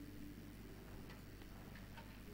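Quiet room tone through the sound system: a steady low hum with a few faint ticks.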